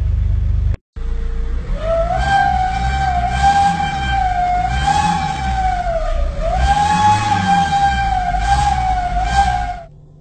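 A brief low rumble cuts off under a second in. Then a car engine is revved up and down in the stationary car, with a strong high whine that rises and falls in pitch along with the revs.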